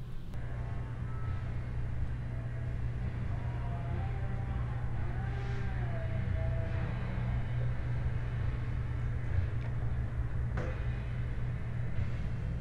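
A steady low rumble, with faint pitched tones that come and go above it around the middle.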